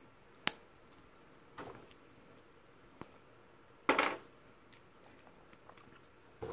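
Plastic parts of a Bandai 30 Minutes Missions model kit clicking and knocking as they are handled and pressed together: sharp single clicks about half a second in, around a second and a half and at three seconds, and a louder, longer rattle of clicks near four seconds.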